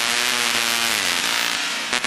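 Dubstep synthesizer playing a buzzy, raspy sustained tone that slides down in pitch about a second in.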